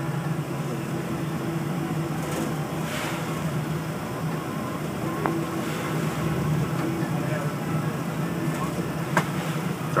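Steady low drone of a ship's engines and machinery under way, with a few short clicks, one about five seconds in and another near the end.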